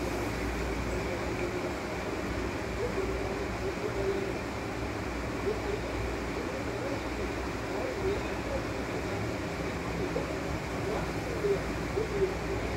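Steady background noise with a low rumble and faint, indistinct voices in the distance; the squeezing of the lemon makes no sound that stands out.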